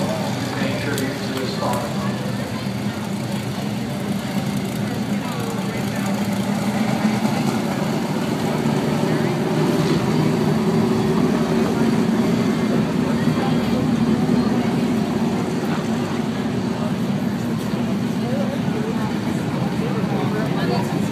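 Dirt-track race car engines running as the cars circle the oval, a steady drone that grows louder from about six seconds in, with voices in the background.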